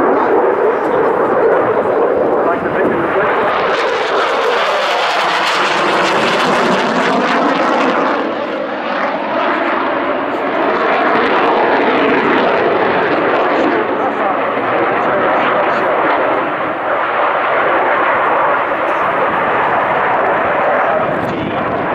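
Saab JAS 39C Gripen's single Volvo RM12 turbofan at high power through display manoeuvres: a loud, continuous jet roar. Its hiss swells about four seconds in, its pitch sweeps down and back up, and it dips briefly before building again.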